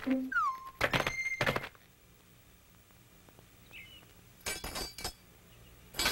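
Cartoon sound effects: a short falling tone, then two sharp thuds about a second in, a quiet stretch, and a quick cluster of clicks near the end.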